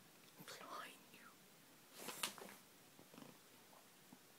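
Faint whispering: two short breathy spells, the second about two seconds in, against near silence.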